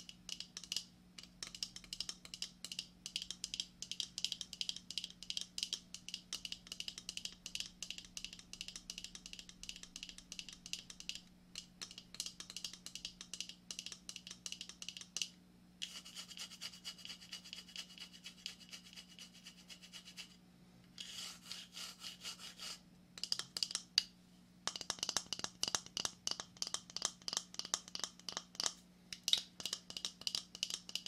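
Fingernails scratching rapidly over the hard shell of a lobster claw, in runs of fine strokes broken by a few short pauses.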